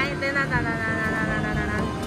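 Music with a single high note held for over a second, starting about half a second in, over the steady hubbub of an arcade.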